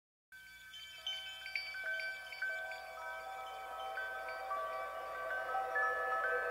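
Soft chimes playing the intro of a song: many bell-like notes struck one after another and left ringing so they overlap, starting just after a moment of silence and slowly growing louder.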